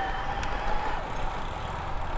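Wind on the microphone and tyre and road noise from a road e-bike rolling along, with a faint steady whine and one light click about half a second in.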